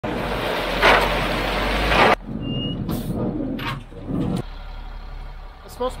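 Crushed stone pouring out of a Ford F-750 dump truck's raised bed, a loud steady rush over a low engine rumble, which cuts off abruptly about two seconds in. A few quieter knocks follow.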